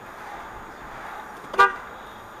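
A single short car horn beep about a second and a half in, over the steady road noise of a car driving.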